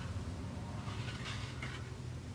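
Faint rustling and light scraping as a stiff fibreglass-covered cardboard frame is handled and turned over on crinkly fibreglass cloth, over a steady low hum.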